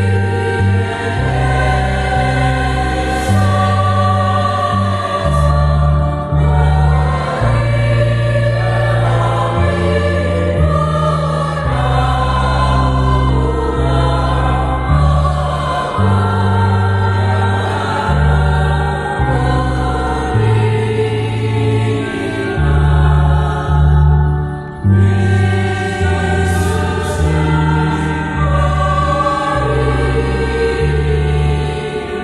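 Mixed choir singing a Christmas song in parts, accompanied by an electronic keyboard holding sustained low chords that change about once a second. The singing breaks off briefly about 24 seconds in, then carries on.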